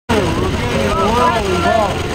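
Several people's voices overlapping, over a steady low rumble.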